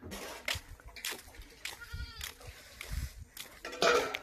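A goat bleats once, briefly, about two seconds in. Around it are scattered knocks and thumps of the camera being carried on foot.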